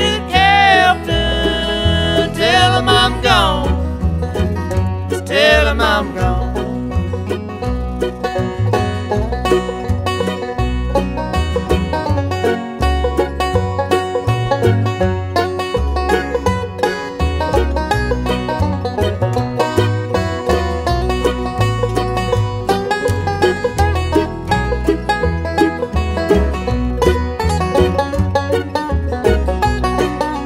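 Bluegrass band instrumental break: a wavering, sliding lead line in the first few seconds gives way to a banjo picking rapid runs of notes over guitar and a stepping bass line.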